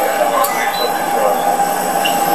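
Steady whine and rush of jet aircraft noise on the apron, with men talking over it.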